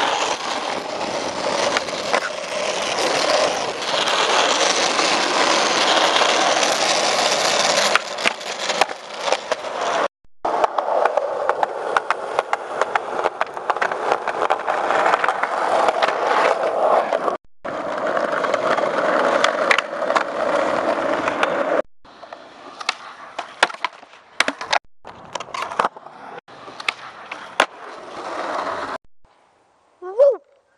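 Skateboard wheels rolling over rough asphalt and concrete, a loud steady rolling noise with sharp clacks of the board's tail popping and landing. It is broken by four brief silences, and the last few seconds hold mostly the clacks over quieter rolling.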